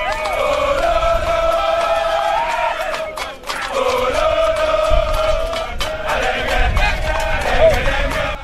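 A group of soldiers chanting together in unison as they run, a loud chorus of men's voices held on long notes. It breaks off briefly about three seconds in.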